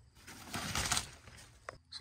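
Rustle of a black fabric apron being handled and lowered, a short burst of noise about half a second in, with a faint click near the end.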